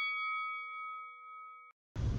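A bell-like ding sound effect ringing out, a few clear tones together fading steadily, then cut off abruptly near the end.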